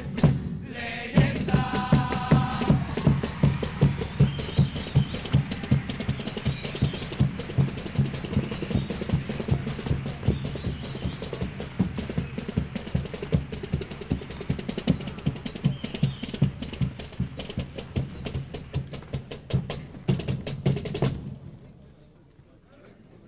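Carnival chirigota band playing a drum-led instrumental passage: bass drum and snare drum beating a steady, fast rhythm, with a short held chord about two seconds in. The music stops suddenly about a second before the end.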